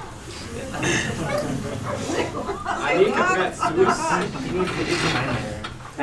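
People talking in a large room, several voices at once with no clear words.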